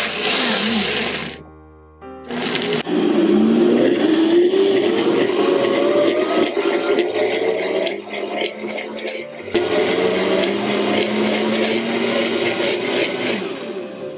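High-power countertop blender grinding soaked soybeans and water into a soy milk slurry. It runs in a short burst, cuts out for about a second, then runs loudly and steadily, with a rising whine a few seconds in and a brief dip past the middle.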